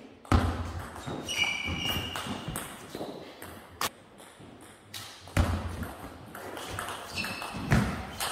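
Table tennis ball being hit, a few sharp clicks off bat and table spread across several seconds, among squeaks and thuds of players' shoes on a wooden sports-hall floor.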